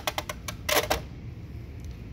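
Steel pry bars clicking and clinking against the metal rack of a tool cart as they are handled: a few light clicks at the start, then a louder clatter just before a second in.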